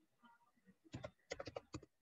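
Faint keystrokes on a computer keyboard: one tap about a second in, then a quick run of about five, as a stock code is typed in.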